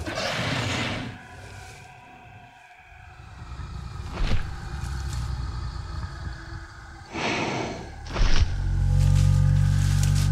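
Documentary score of quiet held tones under dinosaur sound effects for an animated Tyrannosaurus rex: a breathy, noisy growl at the start and another about seven seconds in. Just after eight seconds a heavy hit comes, and a deep, loud low rumble carries on from it.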